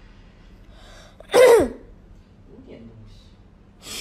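A cat gives one short, loud burst that falls steeply in pitch, about a second and a half in. A softer noisy burst comes near the end.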